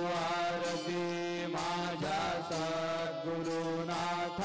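Devotional aarti music: a melody of long held notes that now and then glide in pitch, over a steady low drone.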